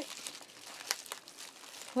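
Small plastic mail packaging crinkling and rustling as it is handled and opened by hand, with a few faint sharp clicks.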